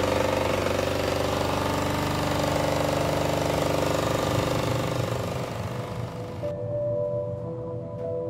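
A 10 hp single-cylinder Kohler diesel engine running steadily with a diesel clatter, just after catching on its first pull. The engine sound weakens about five seconds in, and about a second later it cuts off and soft sustained music takes over.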